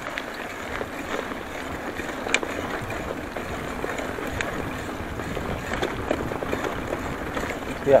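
Bicycle tyres rolling over a rough, cracked concrete-slab road, a steady rumble with a few sharp clicks from the bike.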